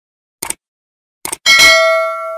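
Subscribe-button sound effect: two short mouse clicks, then a bright bell ding that rings out.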